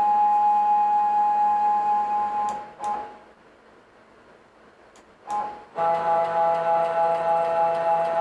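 Stepper motors of a FoxAlien CL-4x4 CNC router driving the axes through its homing sequence: a steady whine that stops about two and a half seconds in, goes quiet for about two seconds, then resumes at a lower pitch.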